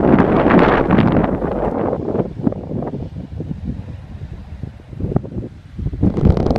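Wind buffeting the camera microphone, a heavy low rumble for the first two seconds that then eases into weaker, uneven gusts.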